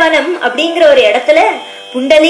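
A woman singing a devotional melody in a high voice, her pitch gliding and holding through the phrase, over a faint steady drone.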